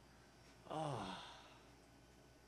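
A man's short voiced sigh, falling in pitch, starting under a second in and fading out within about a second.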